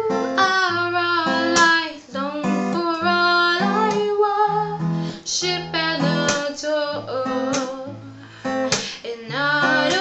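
A woman singing with her own strummed acoustic guitar accompaniment, several notes held long.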